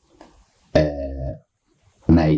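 A man's voice: one drawn-out voiced sound lasting under a second, a hesitation sound between phrases of speech.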